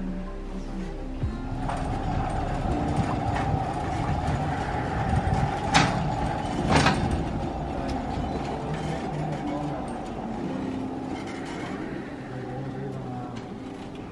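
Background music, then a hospital bed being wheeled along a corridor: a steady rolling rumble from its castors with two sharp knocks a second apart partway through.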